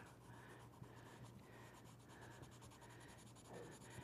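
Faint pencil strokes scratching on drawing paper, shading in short repeated strokes about two a second.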